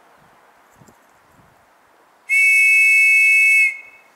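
A hand-blown whistle gives one steady, shrill blast of about a second and a half, two close notes sounding together, marking the end of a minute's silence.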